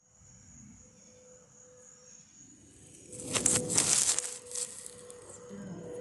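Faint outdoor background with a steady high-pitched insect drone. About three seconds in, a loud rustling burst lasts about a second.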